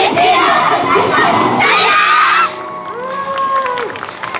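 A group of young female dancers shouting together in a loud finishing call as their yosakoi dance ends. The call cuts off suddenly about two and a half seconds in, leaving a quieter single held tone.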